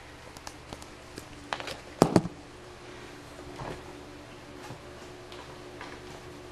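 Handling knocks and clicks as a camera is moved and set down on a wooden floor. Two sharp knocks come about two seconds in, with lighter taps around them, over a faint steady hum.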